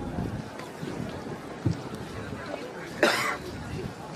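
Faint, indistinct voices over background noise outdoors, with a short thump nearly two seconds in and a brief loud burst about three seconds in.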